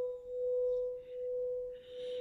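A singing bowl rings with one sustained, steady pitch, its loudness gently pulsing a little more than once a second.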